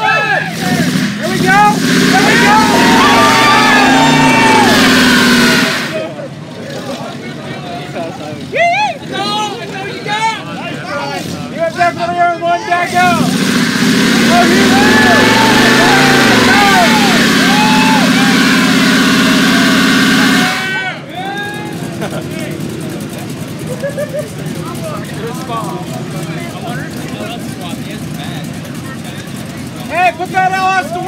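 Pickup truck's engine revving hard while its rear tires spin in a burnout, two long bouts of about five and seven seconds, the engine pitch rising and falling within each.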